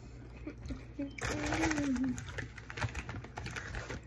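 A child's short murmured voice, rising out of a burst of rustling about a second in, over scattered small clicks.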